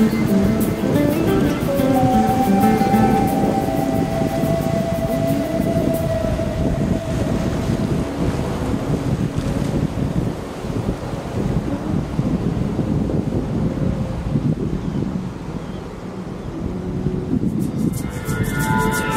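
Background music during the first few seconds, then a heavy, gusting rumble of wind buffeting the microphone, with the wash of surf behind it.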